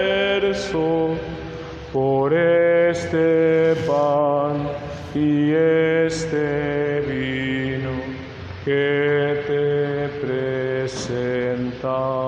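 A slow hymn sung in Spanish for the offertory: long held notes in short phrases, with brief pauses between them.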